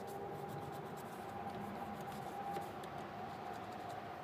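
Cloth wiping and rubbing over a car's dashboard and steering wheel: a soft, steady scrubbing with small scratchy clicks.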